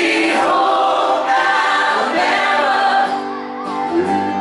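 Live concert music: a band playing while many voices sing together, the audience singing along with the performers.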